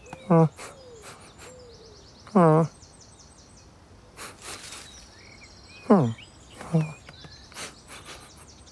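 Short human-voiced cartoon cat noises: four brief questioning 'mm' sounds, each falling in pitch. Behind them, a garden ambience of birds trilling and chirping.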